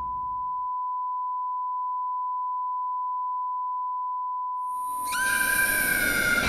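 A steady, pure high tone, like a single held test-tone beep. About five seconds in, a sudden loud burst of hiss and a shrill screech that rises and then holds cuts in over it: a horror sound-effect sting.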